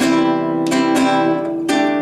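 Nylon-string guitar strummed in a syncopated rhythm: a C chord struck several times, changing to a Dsus4 chord near the end.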